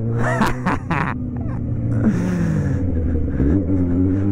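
Yamaha XJ6 motorcycle's inline-four engine heard on board while riding, running at a steady pitch, dropping as the throttle closes about halfway through, then climbing again near the end. A short laugh is heard over it at the start.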